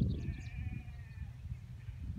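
A distant sheep bleating: one long, faint bleat over a low rumble of wind on the microphone.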